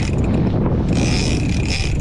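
A fishing reel's ratchet clicker buzzing as line is pulled off it, over the steady rumble of the boat running and wind on the microphone. The buzz is loudest for nearly a second from about the middle.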